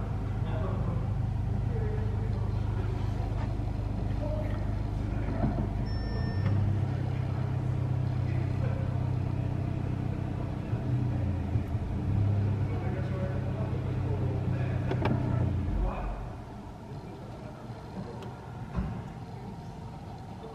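Golf 8 GTI's turbocharged 2.0-litre inline-four idling steadily, heard from inside the cabin, its note stepping up slightly about six seconds in. The engine is switched off about sixteen seconds in.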